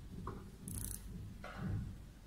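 Faint handling sounds from a handheld plasma handpiece: a light click about a quarter of a second in, then a brief scrape a little later.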